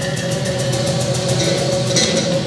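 Live oud, electric bass and drum kit playing together: held oud notes over a deep bass line and busy, rapid drumming.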